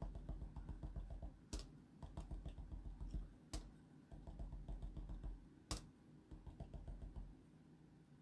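Small rubber stamp tapped rapidly and lightly onto paper, a quick run of soft taps, with three sharper clicks about two seconds apart.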